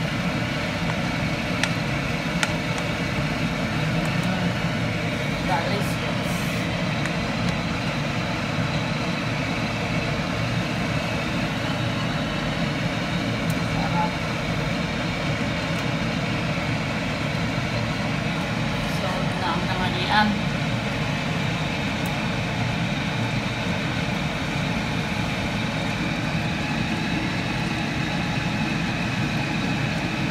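A steady low rumble or hum that runs without change, with faint voices under it and a brief click about two-thirds of the way through.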